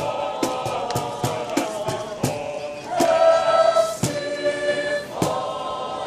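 Mixed choir of men and women singing in harmony, holding long chords that swell louder about halfway through, with sharp percussive beats, two or three a second in the first half and sparser later.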